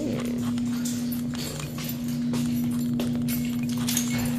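Footsteps clicking irregularly on a hard floor over a steady low hum.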